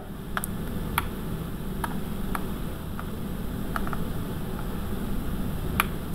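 A few irregular, sharp clicks of a computer mouse over a steady low hum and hiss of room noise.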